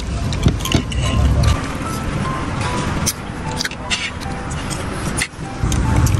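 Background music over busy restaurant din and passing street traffic, with a few sharp clicks of a fork on a plate.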